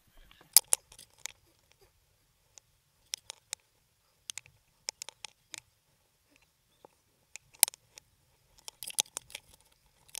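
Irregular sharp clicks and scuffs of a climber scrambling up a rope net laid over a dirt slope, picked up close by a helmet-mounted camera. The loudest knocks come about half a second in, near the eight-second mark and in a cluster around nine seconds.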